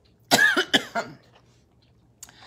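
A person coughing twice in quick succession, about half a second apart, near the start.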